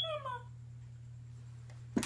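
A cat's meow: one short call at the start that falls in pitch. A sharp click comes at the very end.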